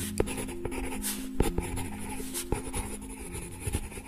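Scratchy drawing strokes of a pen on paper, with a few sharp taps, over a low held musical note.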